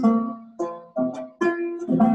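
A gourd-bodied African banjo with a skin head and no metal parts, its strings plucked: a few single notes about half a second apart, each ringing and fading.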